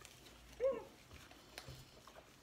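One short, high-pitched vocal call that rises and falls in pitch, about a third of a second in, over faint small clicks.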